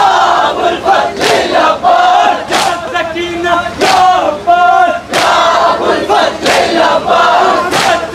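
A group of men loudly chanting a Shia mourning chant together while beating their chests in matam, the hand strikes falling in a steady beat about once every second and a bit.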